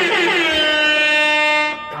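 One long air-horn blast played as a sound effect. It slides down in pitch over its first second, then holds a steady note and cuts off suddenly near the end.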